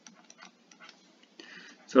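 Stylus tapping and sliding on a tablet while writing by hand: a string of light, irregular ticks.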